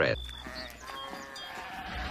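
Sheep bleating quietly, a cartoon sound effect.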